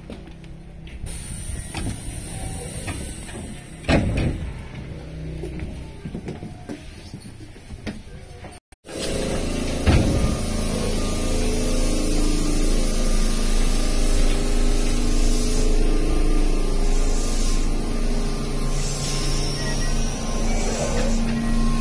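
Keihan 600-series two-car train at a station: a quieter stretch with a sharp knock about four seconds in, then a louder, steady running noise with a low motor hum as the train moves along the platform, with a knock just after that starts.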